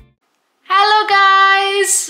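A woman's voice holding one long, high, sing-song note for about a second, starting after a brief silence and ending in a short hiss like an "s".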